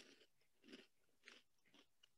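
Faint chewing of a peanut-flavoured puffed corn snack (Smoki), with about four soft crunches spread across two seconds.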